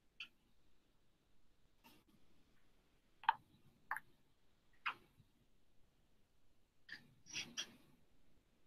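Faint, scattered clicks and taps over quiet room tone: about eight short ones, the loudest about three seconds in and a quick cluster near the end.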